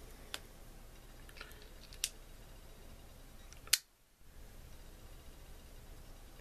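Metal clicks of a Wenger Pocket Grip multi-tool being folded shut and locked: three sharp clicks, the loudest a little past halfway, with faint handling in between.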